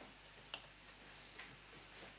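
Near silence: room tone with two faint ticks, about half a second and a second and a half in.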